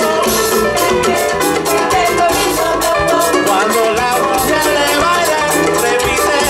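Live Afro-Cuban ensemble playing, with voices singing over a steady, busy percussion rhythm and the rest of the band.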